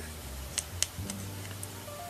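A few small clicks of a crochet hook knocking against a plastic hook-size gauge as it is pushed into and shifted in one of the sizing holes, over faint background music.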